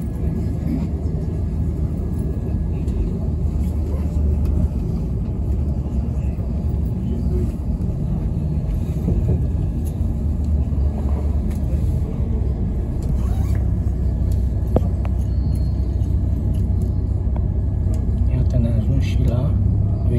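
Steady low rumble of a passenger train heard from inside the carriage as it runs along the track. The rumble grows heavier about two-thirds of the way in, as the train slows into a station.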